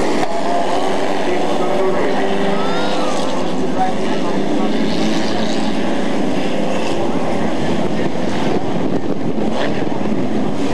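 A pack of pro stock race cars running laps on an asphalt oval: several engines at racing speed blend into one continuous roar, with the pitch rising and falling briefly now and then as cars pass.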